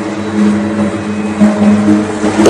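Background score of a radio drama: a low sustained musical drone of a few steady held notes, with a higher note joining about halfway through.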